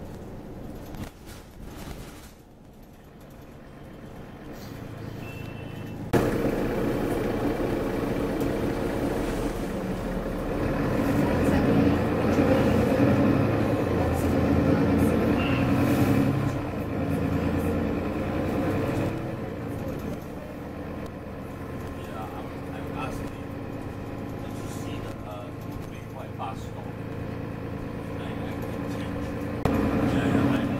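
Mercedes-Benz Citaro bus heard from inside the passenger saloon. It is fairly quiet at first; about six seconds in, the diesel engine and running noise rise sharply as the bus moves off. It is loudest a few seconds later, then settles to a steadier, lower run.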